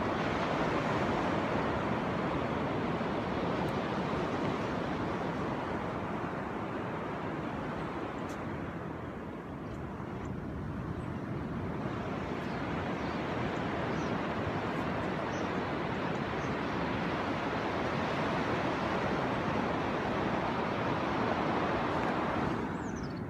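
Surf washing onto a sandy beach mixed with wind on the microphone: a steady rush that eases a little about ten seconds in, then builds again.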